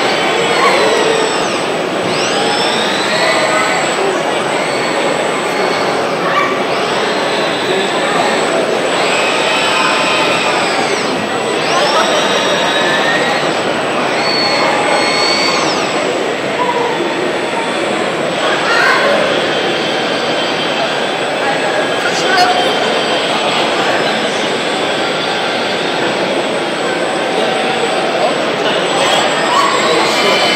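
KUKA industrial robot arm's servo drives whining, the pitch rising and falling in arcs every couple of seconds as the arm swings its passenger seat, over the steady hubbub of a crowded hall.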